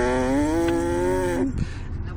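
A baby's long drawn-out vocal sound, held for about a second and a half, its pitch rising slightly and dropping as it ends.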